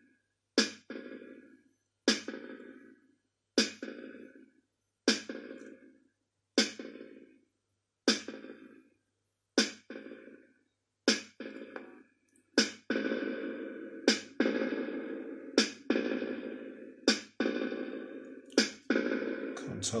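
A repeating drum-machine-style hit about every second and a half, fed through a FuzzDog Spectre Verb reverb pedal, each hit trailed by a reverb wash. From about 13 s in the tails lengthen and run together into a continuous wash, over a faint mains hum.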